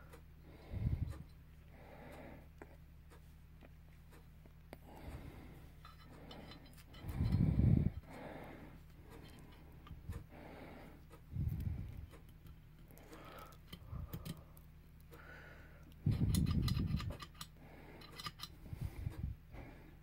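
Small metal gun parts clicking as an AR-15 bolt catch, its spring and detent are worked into the lower receiver, with a few dull thumps; the loudest thumps come about seven and sixteen seconds in.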